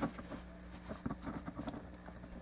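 Hard plastic parts of a toy action figure clicking and scraping as a weapon piece is fitted onto the figure's hand: one sharp click right at the start, then a scatter of lighter clicks.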